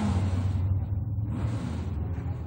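A steady low rumble with two swelling whooshes of noise over it, about a second and a half apart.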